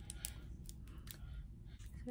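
Faint, scattered small clicks and light scraping from a plastic roller-ball lip oil bottle handled with long acrylic nails as its cap is taken off.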